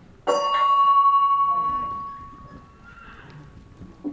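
A bell rings once, a single clear tone that fades away over about two seconds: the show jumping start bell, signalling the rider to begin the round.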